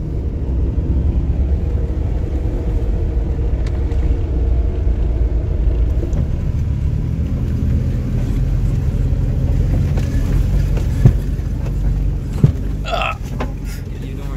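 Steady engine and road rumble heard from inside a four-wheel-drive vehicle on a rough, bumpy track, with two sharp knocks from jolts near the end.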